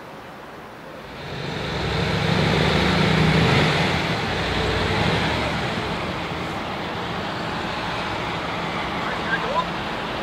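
Diesel engine of a large multi-axle mobile crane powering up as the crane drives across the site. It rises about a second in, is loudest for the next few seconds, then settles to a steady run.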